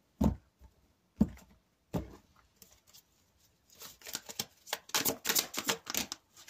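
Tarot deck handled on a table: three sharp taps about a second apart, then a quick flurry of card clicks as the deck is shuffled and a card is flicked out.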